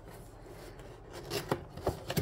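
Cardboard box and its packing being handled while it is opened: faint rubbing and scraping, with a few light knocks in the second half.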